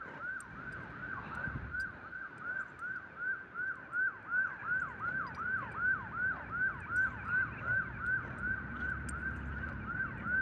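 An emergency-vehicle siren on a fast yelp, its pitch falling in quick repeated sweeps about three times a second, pulsing louder from about four seconds in.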